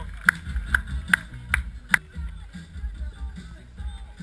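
Hand clapping in a steady rhythm, about two and a half claps a second, five claps in all, stopping about two seconds in. Music with a low, pulsing beat runs underneath.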